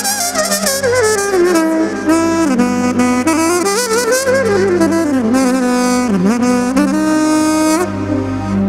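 Music led by a saxophone playing an ornamented melody full of slides and quick runs, over a held low note and a bass line.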